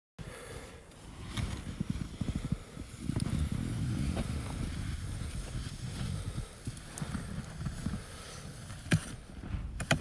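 Snow pusher scoop shoved through deep snow, scraping and crunching in uneven pulses, with a couple of sharp clicks near the end.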